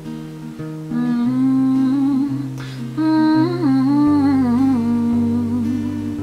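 A woman humming a wordless, wavering melody over slow acoustic guitar chords in the closing bars of the song. There is a brief breath about halfway through.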